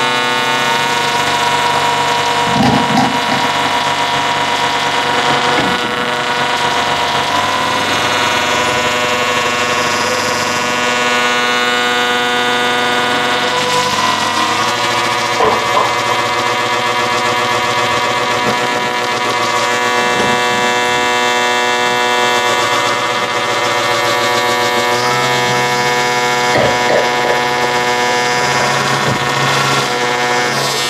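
Amplified homemade string instrument played with a cordless drill held against its strings: a dense, steady drone of many sustained tones, with a few slow pitch slides and short scrapes.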